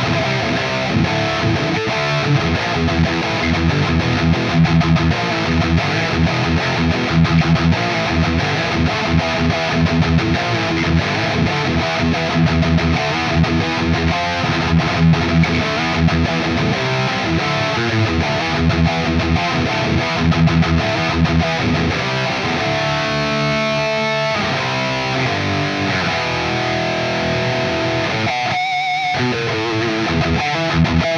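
High-gain distorted electric guitar from an S by Solar TB4 61W single-pickup guitar, played as fast, dense metal riffing. In the last several seconds it eases into longer held notes, with a brief wavering note near the end.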